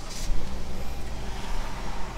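Low steady hum of a car idling, heard from inside the cabin, with a brief soft hiss just at the start.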